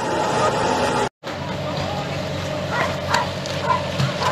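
People's voices and general commotion; the sound drops out completely for a moment about a second in. Afterwards it is quieter, and a dog barks a couple of times near the middle.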